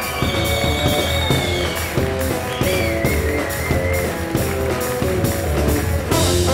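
Electric jazz band playing: drum kit, electric bass and guitar, with a high held line that glides and wavers over the top through the first half.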